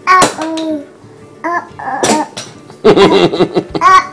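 A toddler vocalising: a two-syllable sing-song babble at the start, a short cough-like burst about two seconds in, then a longer wavering vocal sound near the end.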